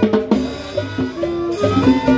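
Live Latin dance band playing, with saxophones and trumpet carrying the melody over a steady beat on drums and timbales.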